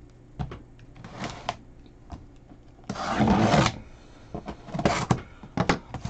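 Cardboard shipping case being opened by hand: scattered scrapes, rubs and knocks of the cardboard, with one loud tearing rasp about three seconds in and a cluster of sharper knocks near the end.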